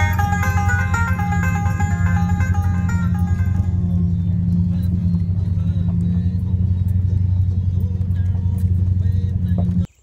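Bluegrass banjo music fading out over the first few seconds, over the steady low drone of a vehicle driving slowly along a dirt track. The drone cuts off suddenly just before the end.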